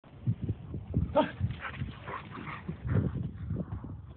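Two dogs playing, with several short low woofs, the first about half a second in and another about three seconds in. A person says "huh?" and laughs about a second in.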